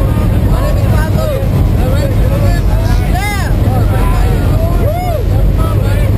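Steady engine drone inside the cabin of a propeller-driven skydiving jump plane in flight, with voices raised over it.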